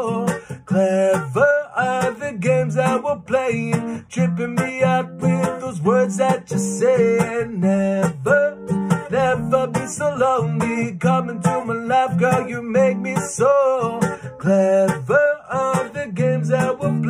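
Acoustic guitar playing an instrumental passage of a song, a continuous run of picked notes and chords.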